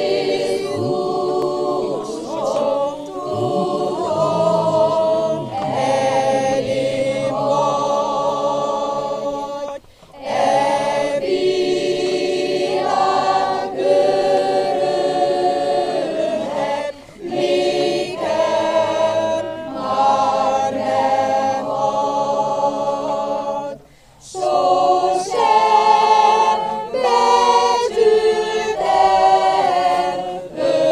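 A small choir of women singing a hymn a cappella from hymnbooks, in sustained phrases with short pauses for breath between the lines.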